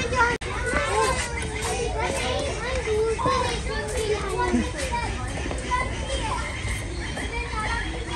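Children's voices chattering and calling, several voices overlapping at a moderate, steady level.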